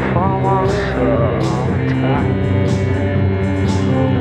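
Post-punk band playing live: a sung vocal line over bass, keyboard and a drum machine, with steady hi-hat ticks.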